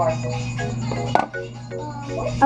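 Background music of short, evenly repeated plucked-sounding notes, with a single sharp knock a little over a second in.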